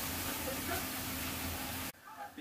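Steady hiss and low hum from a television's sound, with faint, indistinct voices underneath, as the sumo broadcast plays between commentary lines; the sound cuts off suddenly just before the end.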